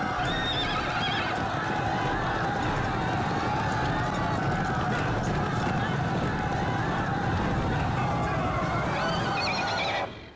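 Several racehorses galloping on turf, their hoofbeats a fast continuous drumming, with crowd voices shouting and cheering over them.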